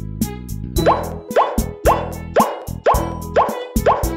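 Cartoon plop sound effects, a short pop rising in pitch repeated about seven times at roughly two a second, over cheerful children's background music.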